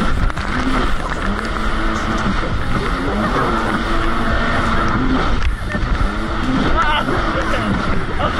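Jet ski engine running at speed, its pitch rising and falling as the craft rides over the chop, under heavy wind buffeting on the microphone. The riders laugh and shout over it.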